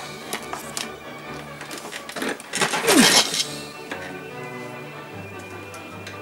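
Light clicks and clatter of laser-cut plywood model parts being handled, with a louder crackling clatter about two and a half seconds in, over background music.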